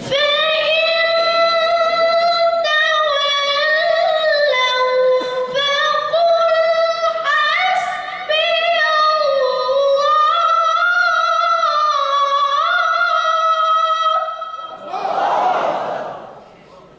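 A young boy's high voice reciting the Quran through a microphone, in long, melodic held phrases with ornamented turns of pitch and brief pauses for breath. The recitation stops a little before the end, followed by a short burst of noise.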